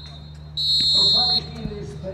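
Referee's whistle giving one long blast about half a second in, lasting nearly a second: the full-time whistle. Players' voices follow.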